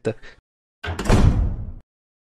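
A heavy door sound effect: one sharp clack followed by a low rumble lasting under a second, cut off abruptly.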